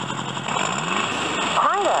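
Coin-operated jeep kiddie ride's sound unit playing an engine sound effect: a steady idling hum with a rising rev about half a second in. Near the end the ride's recorded voice starts up again.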